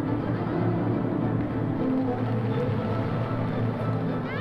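Background music with sustained low tones.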